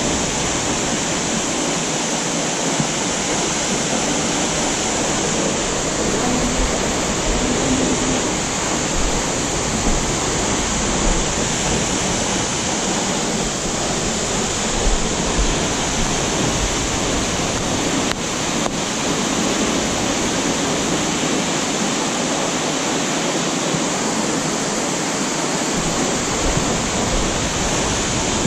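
Loud, steady rushing of a waterfall cascading over rocks into a pool.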